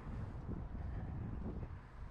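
Wind buffeting the microphone outdoors, a low uneven rumble that swells and eases.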